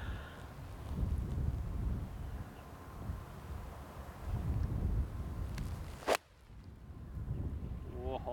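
Low gusting wind noise on the microphone, then a single sharp click about six seconds in: an iron striking a golf ball off the tee.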